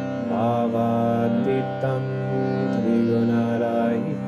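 Harmonium holding sustained reed chords under a voice chanting a line of a Sanskrit sloka with gliding, melismatic pitch.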